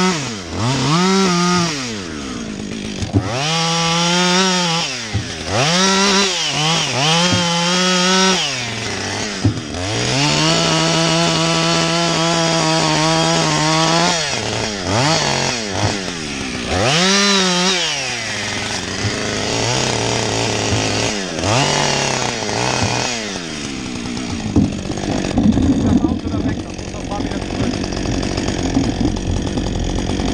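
Chainsaw cutting a felling notch into a tree trunk, revving up and easing off again and again, with a longer steady full-throttle cut about ten seconds in. About nineteen seconds in it drops to a lower, steady idle, and the last several seconds turn rougher and noisier.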